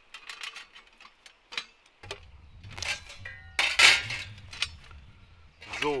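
Thin stainless-steel panels of a Skotti folding grill clicking and clinking against each other as they are hooked together, with a louder metallic scrape about four seconds in.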